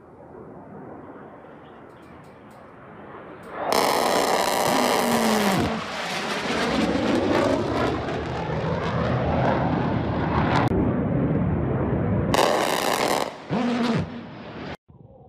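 F-16 Fighting Falcon jet flying overhead: a low engine rumble jumps suddenly to a loud jet roar about four seconds in and stays loud. A second loud surge comes near the end.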